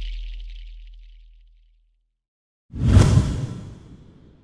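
Logo-animation sound effects. A low tone fades away over the first second and a half, then after a short silence a sudden whoosh with a deep hit comes nearly three seconds in and dies away within about a second.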